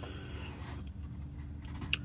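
Faint scraping and rubbing as a hand turns the plastic canister oil filter housing of a Toyota Highlander, threading it back on under the car.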